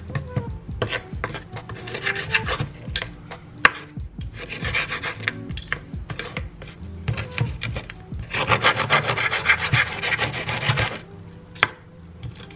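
A kitchen knife saws back and forth through crispy baked pork belly, its blade rasping on the charred crackling and scraping the wooden cutting board in repeated strokes. There is one sharp knock of the blade on the board a little before four seconds in, and a longer, denser run of sawing near the end. The knife is not very sharp, so it has to saw rather than slice.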